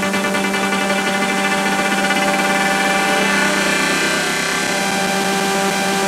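Breakdown in a tech house DJ mix: sustained synth chords over a steady low drone, with the kick drum dropped out.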